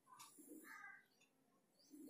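Near silence, with faint bird calls in the background.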